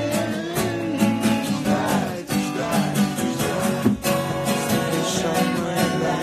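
Acoustic guitar being strummed in a steady rhythm, chords ringing on.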